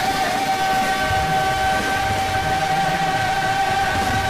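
One long held chord from the live band and singers at the close of a rock-and-roll musical number, steady in pitch throughout after a slight wobble near the start.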